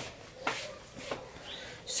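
A few faint, brief rustles and soft handling noises as a plush Santa doll is moved and set down on a windowsill, in a quiet room.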